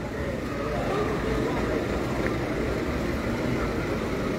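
Steady low rumble of street noise, with faint background voices of people talking.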